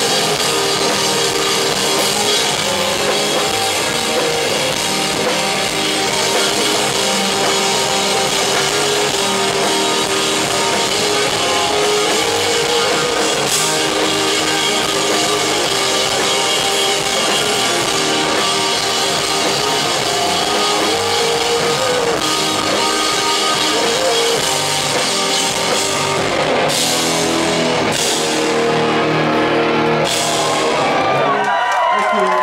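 Live rock band playing loud and steady: electric guitars, bass guitar and drum kit together.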